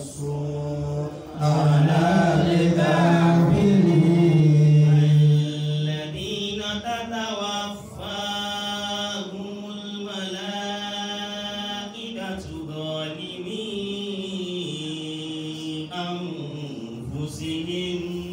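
A man chanting Qur'anic recitation in Arabic into a microphone, in long held notes with ornamented pitch turns. The first phrase, from about two to five seconds in, is the loudest, and several shorter phrases follow with brief breaths between them.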